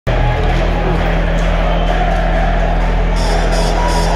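Ice hockey crowd singing a snapsvisa (Swedish drinking song) together in the stands, many voices over a steady low hum.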